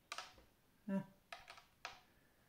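A few light clicks and clinks of metal spoons tapping on a plate as pumpkin seeds are picked out of the pulp, with a short vocal sound about a second in.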